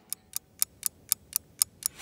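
Quiz countdown timer sound effect: a clock-like tick repeating evenly about four times a second.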